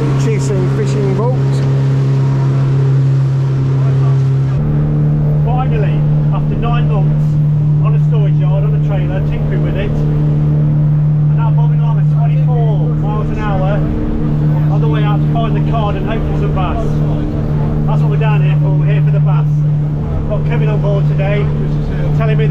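Motorboat engine running at high revs with the boat under way at speed: a steady drone.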